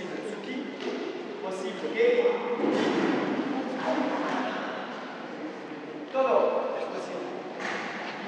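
Indistinct voices in a large hall, loudest about two seconds in and again about six seconds in, with a few short sharp thuds of bare feet landing on a karate mat during a sparring demonstration.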